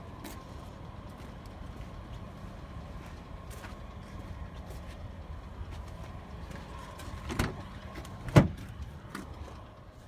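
Car door of a 2006 Ford Taurus being opened: a clunk, then a louder sharp knock about a second later, over a steady low hum and a faint steady high tone.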